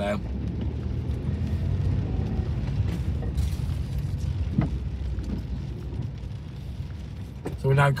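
Steady low rumble of a car's engine and tyres on a wet road, heard from inside the cabin, with a single short tick about halfway through.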